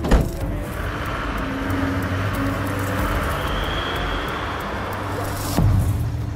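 A van's rear door slams shut at the very start, then a steady hiss and hum of vehicle and street noise, with a louder low rumble near the end.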